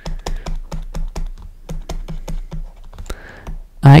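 A quick, fairly even series of light clicks, about five a second, over a low steady hum.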